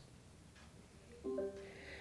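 An Amazon Alexa smart speaker's short chime a little over a second in, fading out near the end: the acknowledgement that a voice command to switch on the lights has been accepted.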